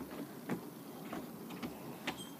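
A few soft footsteps on a rubber track surface, about three, roughly half a second apart, as a person walks away from the stool.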